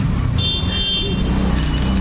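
A motor vehicle's engine running: a steady low rumble.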